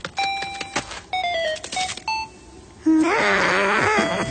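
Cartoon sound effects: a series of short pitched beeps and clicks with a stepping, descending run of notes, then from about three seconds in a louder wavering, whining character vocalization.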